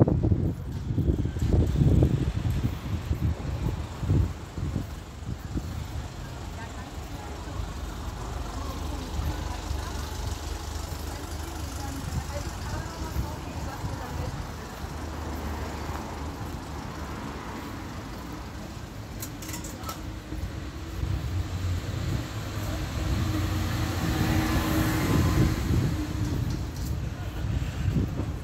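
Town street ambience: road traffic going by, with indistinct voices of passers-by. A fluctuating low rumble is strongest in the first couple of seconds and builds again near the end.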